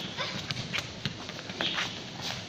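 A small child's quick footsteps on paving tiles, with light taps and scuffs as he kicks and dribbles a soccer ball: uneven short taps, several a second.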